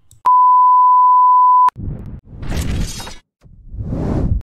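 A steady electronic beep tone lasting about one and a half seconds, then a logo-transition sound effect made of two noisy rushes, the second near the end.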